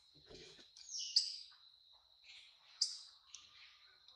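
Birds calling in the background: two loud, sharp high chirps, one about a second in and one near three seconds, with smaller chirps between, over a steady thin high-pitched tone. A brief soft rustle comes just after the start.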